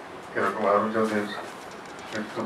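Speech only: a man's voice speaking one short phrase into a microphone about half a second in.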